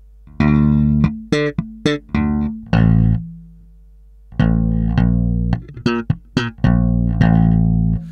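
Electric bass guitar played slap-style: thumb slaps, popped notes and muted dead notes in a syncopated sixteenth-note funk-rock riff. A short phrase is followed by a pause of about a second, then the rhythmic figure runs on.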